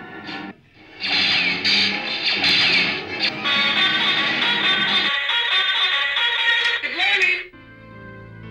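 Audio of a television programme playing: loud, busy music with voices mixed in. A brief dip comes about half a second in, and near the end it gives way to quieter, slow music.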